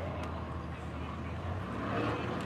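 Urban street background: a low steady rumble of traffic with faint voices of passers-by.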